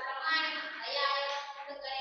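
A person's voice running on without a break, drawn out in a sing-song way with its pitch rising and falling.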